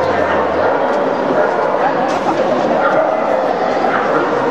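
Many dogs yelping, barking and whining at once in a crowded show hall, a dense and continuous chorus of overlapping calls, with people talking underneath.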